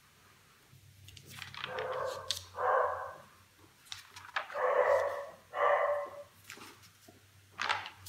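A dog barking, four calls in two pairs, the loudest sound here, over the flick and rustle of paper notebook pages being turned by hand.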